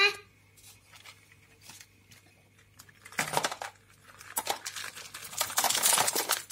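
A small bag being tipped out onto a desk. Small plastic toys clatter and knock and a plastic snack wrapper crinkles, in a short burst about three seconds in and a longer busy stretch of rattling and rustling from about four and a half seconds on.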